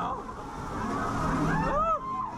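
Sound inside a dark theme-park ride: a steady rushing noise with voices under it, and one voice-like call that rises and falls near the end.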